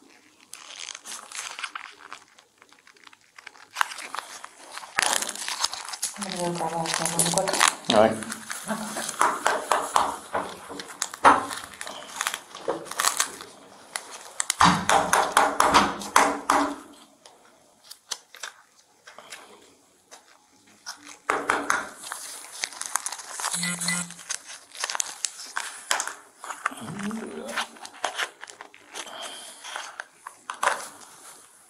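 Plastic and paper packaging crinkling and rustling as gloved hands open and handle an evidence swab kit. Low voices come and go in between.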